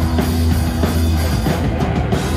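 Live rock band playing an instrumental passage: electric bass holding a low note under electric guitars, with a drum kit keeping a steady beat.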